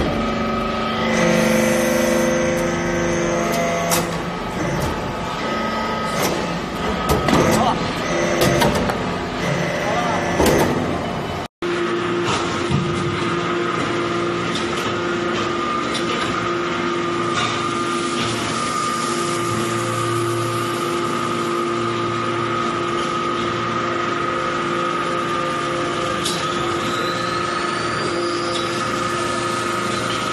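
Hydraulic metal briquetting press running, its hydraulic power unit giving a steady hum with a constant whine. Clanks and knocks sound through the first part. After a brief cut about eleven seconds in, only the even machine hum is left.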